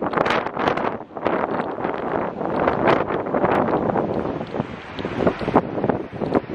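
Wind buffeting a handheld camera's microphone outdoors, a loud rumbling rush that surges unevenly in gusts.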